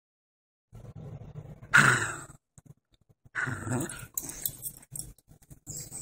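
Australian cattle dog grumbling and growling, with two louder calls a little over a second apart, each about half a second long.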